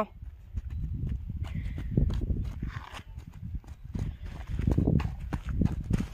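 Footsteps crunching on a gravel road, an irregular run of short steps throughout.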